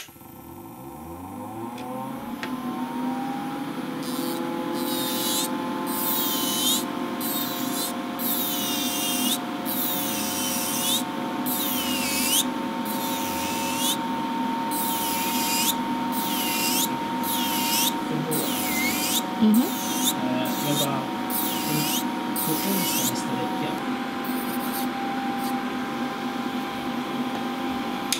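Electric nail drill (e-file) spinning up to a steady whine, then its bit grinding against an old gel/acrylic nail in repeated short strokes, roughly one a second, as the old set is filed off. The drill's pitch drops slightly near the end.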